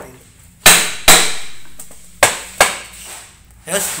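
Claw hammer striking a wooden door-stop strip on a wooden door frame: four sharp blows in two pairs, each with a short ringing tail.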